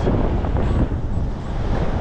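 Strong wind buffeting the microphone: a loud, even low rumble, with surf behind it.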